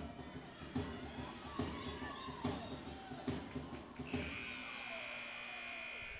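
A basketball dribbled on a hardwood court, a bounce a little under every second, over crowd noise in a large gym. About four seconds in, the scoreboard horn sounds a steady tone for about two seconds, ending the half.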